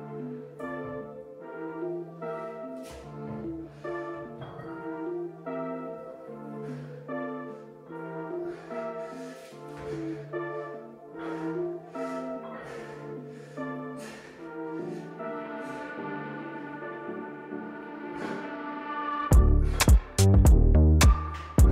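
Background music: a melodic piece of sustained notes over a steady bass line. About a second before the end, a much louder track with a heavy low beat cuts in.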